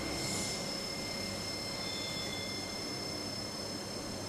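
CNC vertical machining centre running, its spindle milling a clamped steel part under coolant spray: a steady hiss of machinery with a few faint steady high whines.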